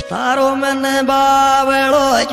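A voice holding one long, steady sung note in a Rajasthani devotional folk song, with no drum beat under it.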